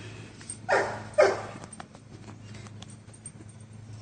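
A dog barking twice in quick succession about a second in, the second bark the louder.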